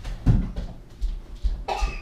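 A woman gagging and coughing, retching at the taste of a foul-flavoured jelly bean. The loudest gag comes about a quarter second in, followed by a few smaller coughs and a breathy heave near the end.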